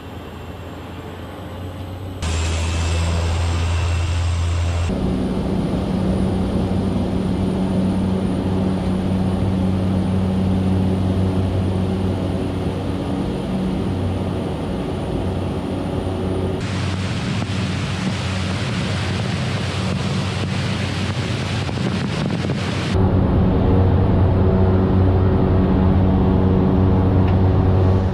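Cessna 208 Caravan's turboprop engine and propeller at takeoff power, heard from inside the cockpit: a loud, steady drone with a deep hum that builds over the first couple of seconds as power comes up. The tone shifts abruptly a few times.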